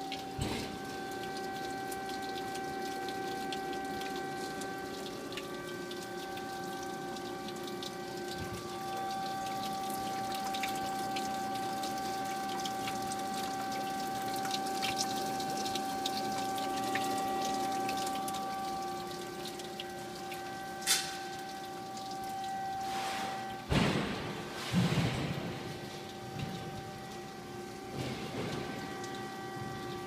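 2005 DoAll 13 x 13 inch horizontal band saw running: a steady machine whine made of several held tones over a hiss. About three-quarters of the way in, the strongest tone cuts off and a few clunks and knocks follow.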